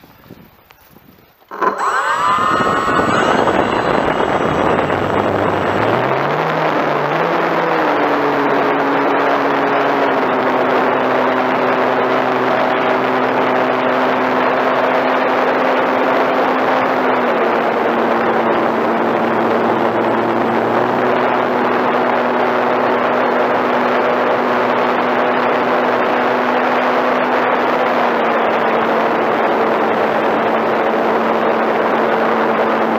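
Electric RC model airplane's motor and propeller, heard from a camera just behind the propeller: quiet at first, then throttled up abruptly about two seconds in with a brief rising whine for takeoff. It then runs loud and steady in flight, a rushing wash of air with a buzzing propeller tone that steps down slightly in pitch a few times.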